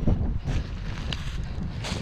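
Wind buffeting the camera's microphone: an uneven low rumble.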